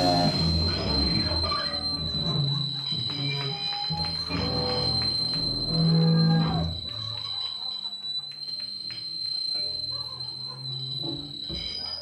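A steady high-pitched feedback whine from the band's amplifiers rings on after the song stops, over scattered low bass and guitar notes and crowd chatter. The low notes fade out about two-thirds of the way through, leaving the whine and the chatter.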